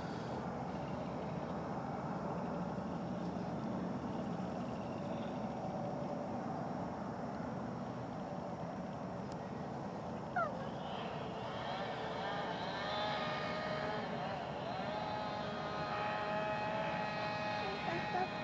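Steady outdoor background rumble, with a distant motor hum coming in about twelve seconds in that holds its pitch for a second or two at a time and steps between levels. A short rising squeak sounds about ten seconds in.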